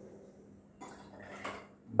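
Grapefruit juice poured from a steel jigger into a stainless steel cocktail shaker holding ice cubes: a brief, faint splash with light metal clinks starting about a second in.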